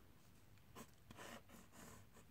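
Faint scratching of a pen on paper as a rectangle is drawn: a few short strokes starting about a second in.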